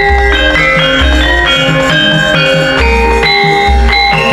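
Javanese gamelan music: metal-keyed instruments struck in quick runs of ringing notes over a deep, steady bass.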